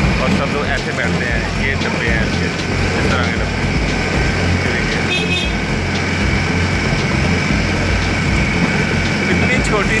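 A miniature diesel-powered ride-on train running steadily along its narrow track: a continuous low rumble with a thin, steady high whine on top.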